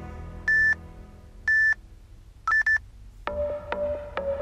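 Workout interval timer beeping: short high beeps about once a second counting down, then a quick triple beep marking the start of the work interval, after which upbeat background music comes back in.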